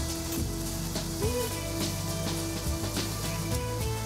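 Background music over meat and sausages sizzling and crackling on a barbecue grill.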